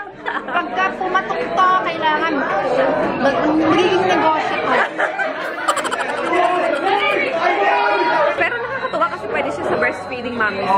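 Speech only: several people talking excitedly over one another amid general chatter.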